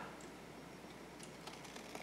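Very quiet: faint room tone with a few soft, light ticks from scissors and paper being handled.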